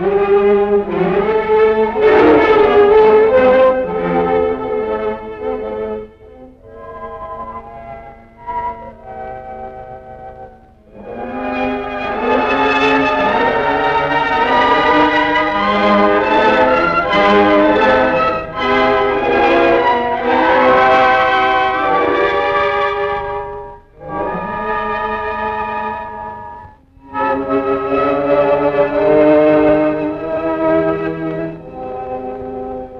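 Orchestral film score, with strings and brass playing in phrases separated by short dips; it is quieter for a few seconds about a quarter of the way in, then swells for a long loud passage.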